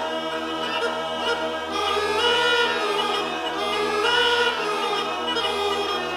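Background music: a choir singing sustained chords.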